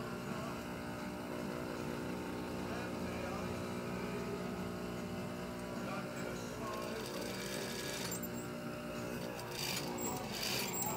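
Industrial sewing machine's motor running with a steady hum while the fabric is lined up under the presser foot.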